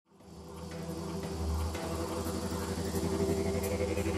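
Intro of a neurofunk drum and bass track fading in: a rapidly pulsing, growling low synth bass under sustained synth tones, growing louder over the first second and a half.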